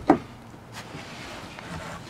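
A single short knock right at the start, then a faint click under a second in, as hands handle the plastic inside of a kayak hull.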